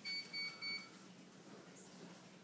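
Three short, identical electronic beeps in quick succession within the first second, each a single high tone.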